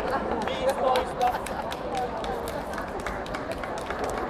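Background chatter of many people in a large hall, with voices overlapping and no one voice standing out, and frequent light ticks and taps throughout.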